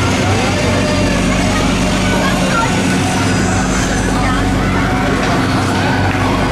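Schwarzkopf Twister fairground ride running, a steady machinery hum under a constant mix of crowd voices.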